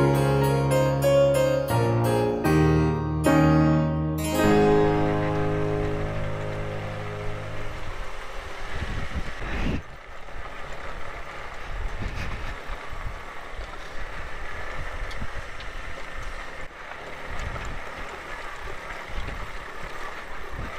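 Piano background music for the first few seconds, fading out. Then a Suzuki Van Van 125 motorcycle runs up a loose gravel track, a steady noisy rumble of engine and tyres on stones.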